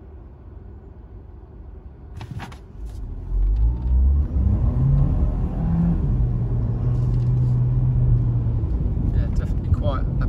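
VW Golf 1.4 TSI four-cylinder turbo petrol engine, heard from inside the cabin, ticking over quietly and then pulling away hard about three seconds in. The engine note rises and drops back as the automatic gearbox changes up, then holds steady.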